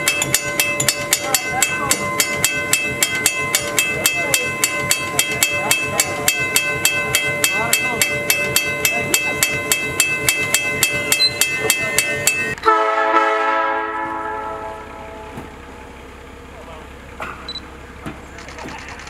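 Grade-crossing warning bell ringing, rapid even strikes with a steady ring, which cuts off suddenly a little after two-thirds of the way through. A locomotive horn then sounds and fades away over a couple of seconds.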